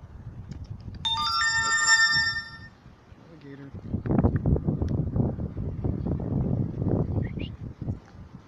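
A short electronic chime, like a phone ringtone or alert, about a second in: several steady tones entering one after another and held for about a second and a half before cutting off. It is followed by a louder stretch of low, rough rumbling noise lasting about four seconds.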